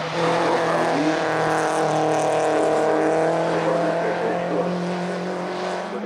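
Citroën Saxo VTS's 1.6-litre four-cylinder petrol engine running hard as the car passes, its note held at a fairly steady pitch and fading slightly near the end.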